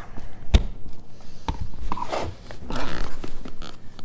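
Dry sphagnum peat moss being scooped into a clear plastic tote with a plastic scoop: a sharp knock about half a second in, a lighter knock a second later, then dry rustling and scraping.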